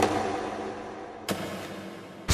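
An empty plastic drink bottle dropped into a plastic rubbish bin: a sharp knock as it lands, fading away, then a second knock a little over a second in.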